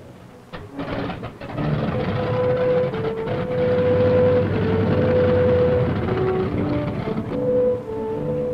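Pratt & Whitney R-2800 Double Wasp radial engines of P-47 Thunderbolts running as the fighters taxi, a dense rumble that grows loud about a second and a half in. Held music notes that step in pitch sound over the engines.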